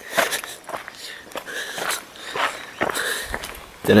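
Footsteps scuffing and crunching on a rocky trail, a string of irregular steps.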